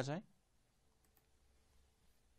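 A man's last spoken word, then quiet room tone with a faint steady hum and two faint clicks about a second in.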